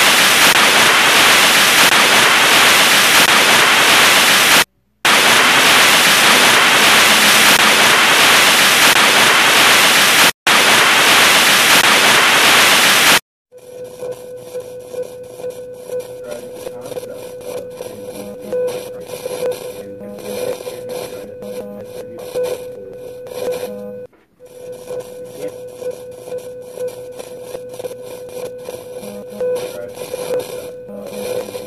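Loud, steady static hiss, cut by two brief silences, stops abruptly about 13 seconds in. A much quieter crackling texture with a steady hum-like tone follows, with one short dropout.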